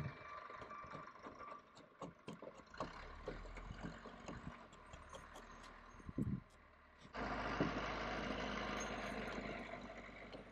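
Faint, irregular light clicks and scrapes of a small hand tool working against wood at a timber-frame joint where a wooden wedge is being fitted. About seven seconds in, a steady low engine-like hum starts suddenly and carries on.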